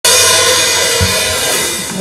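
Live metal band's cymbals and electric guitars ringing out with a loud, slowly fading wash of cymbal and held guitar tones, and a low bass hit about halfway through.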